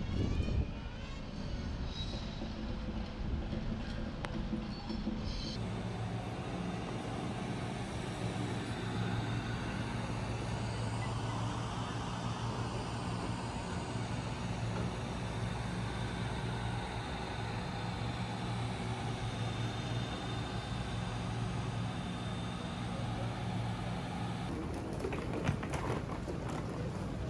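Steady background noise with a low mechanical hum that sets in about five seconds in, with faint clicks near the end.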